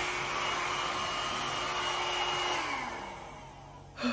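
Mini hair dryer running on high: a steady rush of air with a motor whine, used to blow-dry hair. About two and a half seconds in it is switched off, and the whine drops in pitch and fades as the motor winds down.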